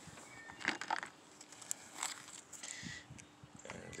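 Faint, scattered clicks and light rustling handling noises under a low background.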